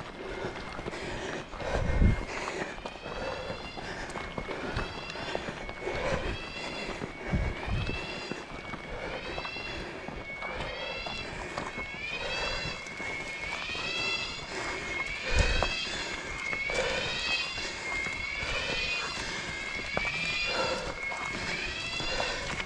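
An animal calling from the roadside forest, a rising call repeated about once a second over a steady high tone, growing louder in the second half. Runners' footsteps and a few knocks sound beneath it.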